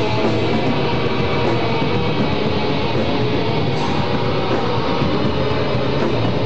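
Live metal band playing loud, dense music led by electric guitar, a steady unbroken wall of sound.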